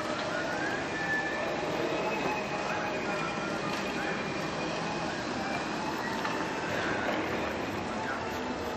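Steady outdoor city noise: a hum of traffic and distant voices, with faint high whines that rise and fall now and then.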